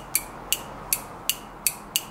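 Automatic transmission solenoid clicking in a steady rhythm, about three sharp clicks a second, as battery power is switched to it on and off. A click with each pulse is the sign of a working solenoid.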